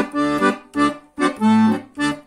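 Todeschini piano accordion's left-hand bass and chord buttons played as a choppy accompaniment beat: short separate notes with brief gaps between them, in the key of G.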